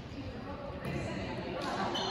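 Indistinct players' voices echoing in a large gym, with the dull hit of a volleyball being played.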